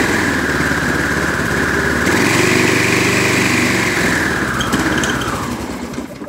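The Briggs & Stratton 675 series 190cc engine on a Craftsman walk-behind trimmer running. Its speed rises a little about two seconds in, as the newly fitted throttle control is worked, then the engine winds down and stops near the end.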